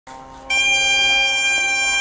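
Asturian bagpipe (gaita asturiana) starting up: the drone sounds softly first, then about half a second in the chanter comes in on one long, high held note over the drone.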